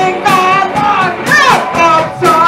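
A woman singing into a microphone over a live noise-pop band with drums. Her voice slides up and down, with a falling swoop about halfway through.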